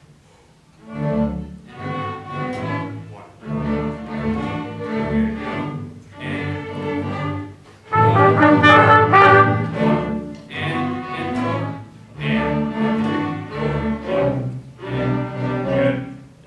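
A student ensemble playing in rehearsal under a conductor: sustained chords in phrases of a second or two with short breaks between them, starting about a second in and loudest around the middle.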